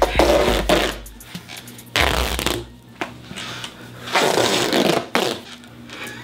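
Duct tape being pulled off the roll as it is wrapped, in three long tearing pulls, each about a second long and about two seconds apart.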